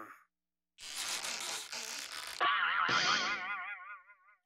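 A cartoon sound effect of bedsprings flinging a character upward: a burst of noisy clatter, then a wobbling "boing" whose pitch wavers several times a second, slowly falls and fades away.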